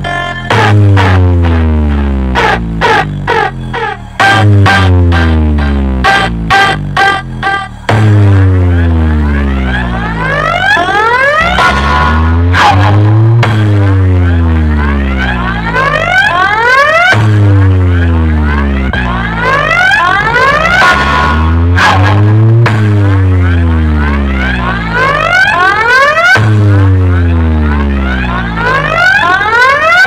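Bass-heavy DJ speaker-check track played loud through a tall stacked speaker wall. For the first several seconds it is rapid stuttered hits; after that, deep bass booms every two to three seconds come with falling low pitch sweeps and rising high sweeps.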